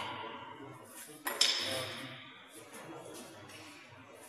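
A single sharp metallic clank about a second in, ringing briefly as it dies away, over faint room noise.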